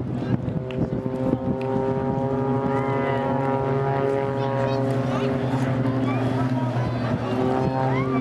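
Aerobatic display aircraft droning overhead in formation: a steady, pitched engine hum with a clear ladder of harmonics, with faint voices of onlookers near the end.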